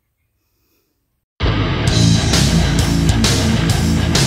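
Near silence, then, about a second and a half in, loud heavy rock music with guitar starts suddenly and runs on with a steady beat.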